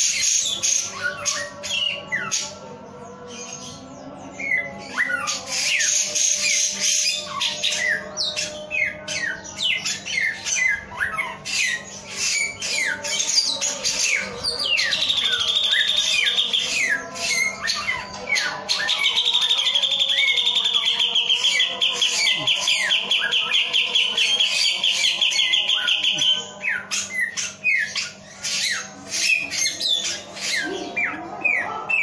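Caged male samyong songbird singing continuously in full song: a fast, varied run of chirps and whistled sweeps, with a rapid trill about a quarter of the way through and a longer one lasting about seven seconds in the second half.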